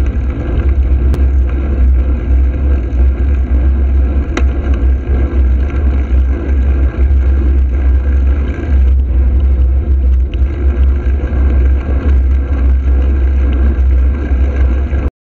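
Wind buffeting the microphone of a camera on a moving bicycle: a loud, steady low rumble that flutters in level, with road noise under it. Two faint clicks come about a second and four seconds in.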